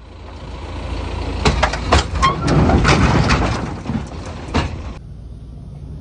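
A tractor engine runs under load, with a series of sharp metallic bangs and scrapes as a large bolted metal culvert is shoved off a flatbed trailer. The noise builds over the first seconds and cuts off suddenly about five seconds in.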